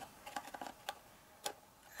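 A few faint clicks and taps, three of them clearer and about half a second apart, as a small metal-tipped craft tool and a cardstock treat box are handled.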